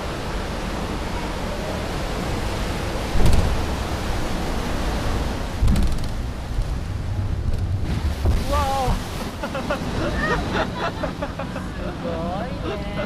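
Water rushing and churning around a ride boat as it runs down a narrow artificial flume channel, with two heavy low thumps about three and five and a half seconds in. Voices are heard over the water in the last few seconds.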